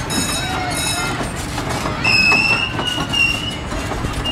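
Spinning children's fairground ride running with a steady rumble and high metallic squeals from its turning gear, the longest lasting over a second about halfway through, with children's and crowd voices mixed in.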